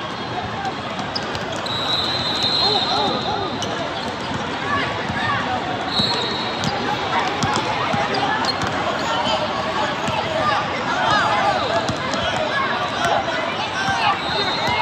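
Basketball game on a hardwood court: a ball bouncing, sneakers squeaking in short chirps, and a steady background of voices in a big hall. Two short high tones sound about 2 s and 6 s in.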